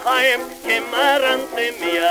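Orchestra accompaniment from a 1925 recording of a comic Yiddish song, a melody line played with strong vibrato. The sound is thin and has no deep bass, as on an old acoustic 78.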